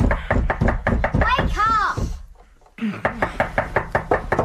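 Rapid, insistent knocking on a door, in two bouts separated by a short pause a little over two seconds in.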